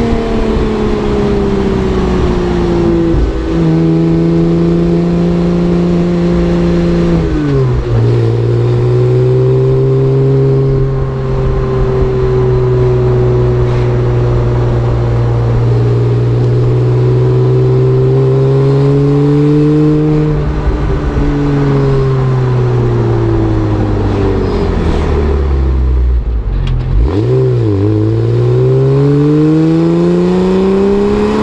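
A 2001 Porsche 986 Boxster S's flat-six, heard right at its JanSpeed rear-box exhaust tip while driving. It pulls through two gear changes in the first few seconds, then holds a steady cruising note. Near the end it eases off with a falling pitch, then accelerates again with a rising note.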